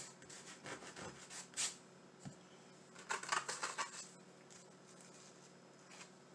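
Soft rustling and rubbing as vinyl window-cling pieces are handled and pressed onto a canvas with the fingers, in a few short bursts about a second in and again around three seconds in.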